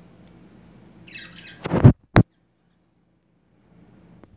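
Brief budgerigar chatter about a second in, cut off by a loud thump and then a sharp click; after that the sound drops out to dead silence for over a second.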